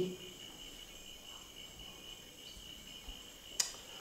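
Crickets trilling steadily and faintly as a night-time background, with one sharp click near the end.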